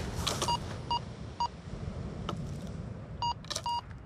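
Minelab Go-Find 66 metal detector beeping as its coil passes over a buried target: three short, same-pitched beeps about half a second apart, a pause, then two more near the end.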